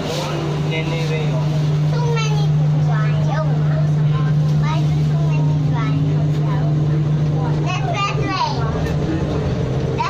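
Metro train running along an elevated track, heard from inside the car: a steady low hum, with a faint tone slowly rising near the end, under passengers' voices.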